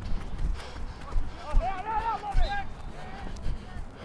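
A distant man's voice calling out across an open field from about a second and a half in, fainter again near the end, over scattered low thumps.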